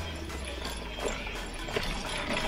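Mountain bike rolling down a rooty dirt trail: tyres running over dirt and roots with irregular knocks and rattles from the bike, over a steady low rumble of wind on the camera.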